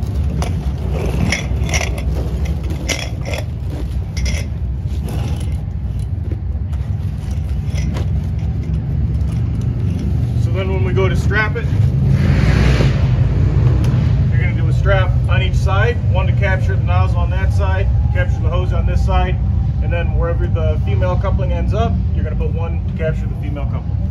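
Fire hose being handled and folded on a concrete floor: short scrapes and knocks in the first few seconds, then a longer scraping swish a little past halfway as the hose is pulled across the concrete. A steady low rumble runs underneath, with voices in the second half.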